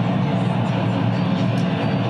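Steady low drone of a car's cabin, engine and road noise, from a video played back over a hall's speakers.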